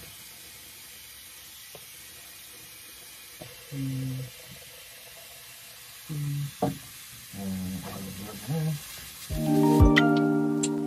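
Bathroom sink faucet running steadily, a soft even hiss of water into the basin. A few short voice sounds come in midway, and music with chiming notes starts near the end.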